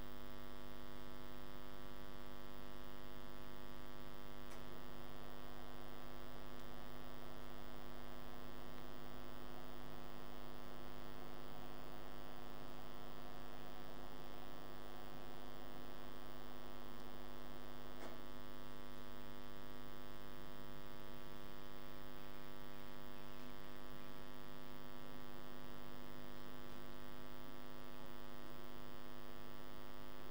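Steady electrical mains hum, a low buzz with many even overtones, unchanging throughout. There are two faint clicks, one about four seconds in and one near eighteen seconds.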